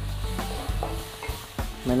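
Chopped onions sizzling in hot oil in a kadhai, with a spatula stirring and scraping them around the pan.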